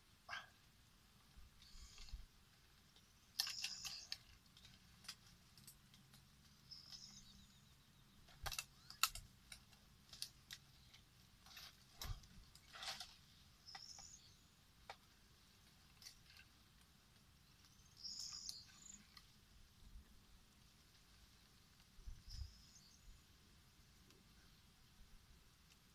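Faint bird chirps, short high calls every few seconds, with scattered soft clicks over an otherwise near-silent background.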